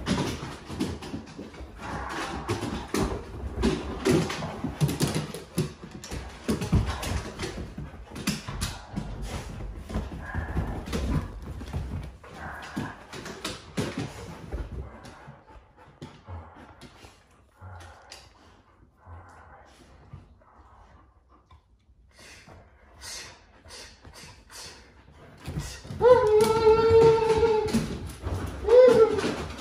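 Huskies vocalizing and scrambling about on a wooden floor, busy at first, then a quieter spell of short faint whines. Near the end comes one long, loud, wavering howl.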